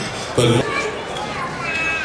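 A man's voice over a microphone says one short word, then the background chatter of a room full of guests, children's voices among it.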